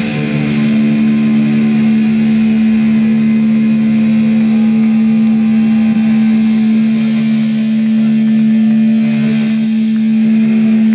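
Guitar amplifiers left droning one steady, distorted tone after the band stops playing, loud and harsh through the camera's microphone.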